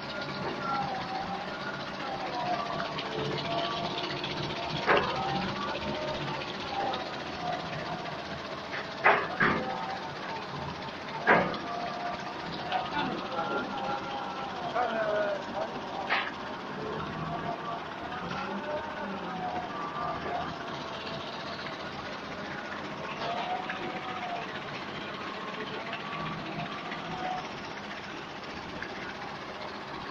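Steady running noise of a sand recovery separator's dewatering screen, shaken by two vibration motors while sandy slurry pours through it, with voices talking in the background. A few sharp knocks stand out over it, two close together in the middle.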